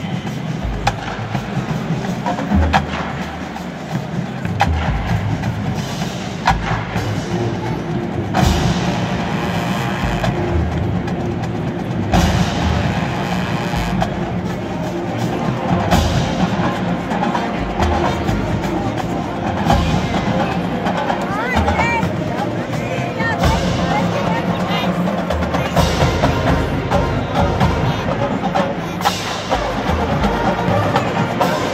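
Marching band playing, brass with drumline percussion, heard from the stands with nearby crowd voices.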